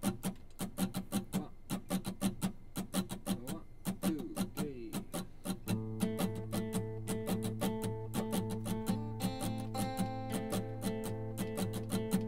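Acoustic guitar picked in a quick, even rhythm, about five strokes a second. About six seconds in, held, ringing chord notes join in, and the sound grows fuller.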